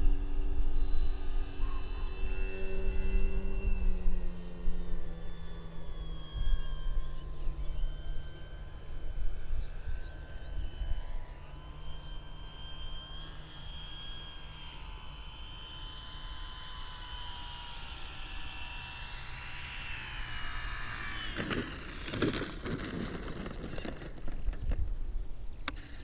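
Electric motor and 15x8 inch wooden propeller of an Avios Grand Tundra RC plane humming steadily, its pitch slowly dropping as it throttles back, and growing fainter as it flies away. Wind rumbles on the microphone, and a few short knocks come near the end as the plane touches down on the grass.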